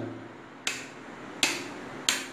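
Two sharp clicks, a little under a second apart, from a mixer grinder's switch knob being turned, with no motor sound following. The motor will not start because the grinder's red overload-protector button has tripped.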